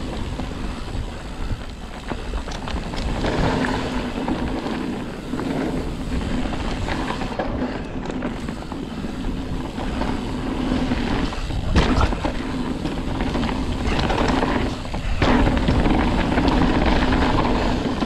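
Ibis Ripmo AF mountain bike rolling fast down a dirt singletrack: knobby tyres humming and crunching over the trail, with the bike rattling and knocking over bumps, one sharp knock about two-thirds of the way through, and a deep wind rumble on the handlebar-mounted camera.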